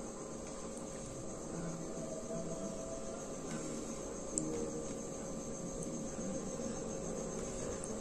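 Faint steady background: high, continuous insect chirring over a low, even hum.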